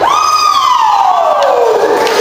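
The backing music stops and one long note slides steadily downward for about two seconds, closing the song.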